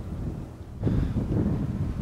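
Wind buffeting the microphone, an uneven low rumble that eases off briefly and picks up again a little under a second in.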